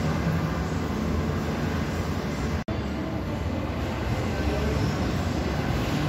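Steady, fairly loud indoor background rumble with indistinct voices mixed in, broken by a momentary dropout a little past halfway.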